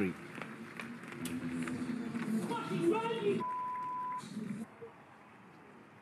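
A man's voice, then a single steady censor bleep of just under a second about three and a half seconds in, covering a swear word, followed by quiet.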